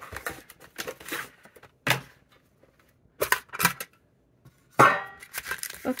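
Cardboard packaging being worked off a metal tin pencil case: a string of short clicks, taps and rustles, then a louder metallic clank with a brief ring near the end as the tin is handled open.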